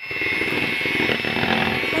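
Electric hand mixer running steadily with a high whine, its beaters whipping a whipping-cream mixture in a bowl. The sound starts abruptly at the beginning.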